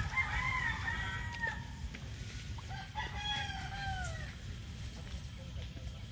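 A rooster crowing twice, two long calls each holding its pitch and then falling away at the end, the second starting about three seconds in.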